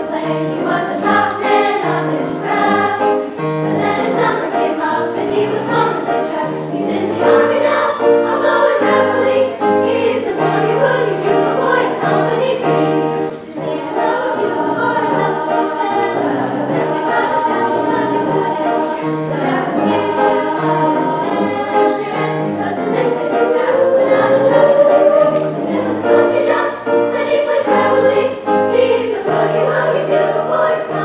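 A school choir of mostly girls' voices singing a piece in harmony, continuously.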